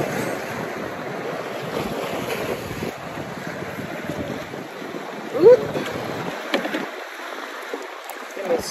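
Steady wind on the microphone and water lapping around a small boat. A short rising voice-like sound is heard about five and a half seconds in, followed by a light click.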